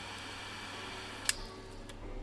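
Butane torch lighter burning with a steady hiss while a cigar is puffed alight, with one sharp click a little over a second in.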